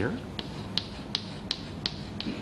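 Chalk tapping against a chalkboard in a steady run of short clicks, about three a second, as a dotted line is dabbed onto the board.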